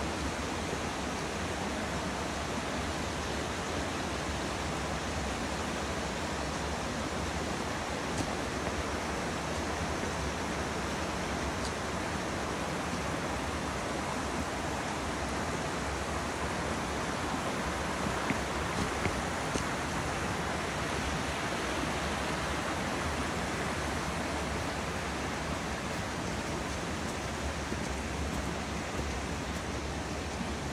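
Small woodland stream running over rocks: a steady, even wash of flowing water.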